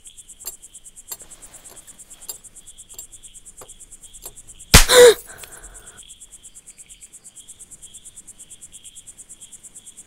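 Crickets chirping in a steady, rapid, even pulse, with a fainter, lower insect trill under it. About five seconds in, one sharp, loud smack sounds and rings out briefly.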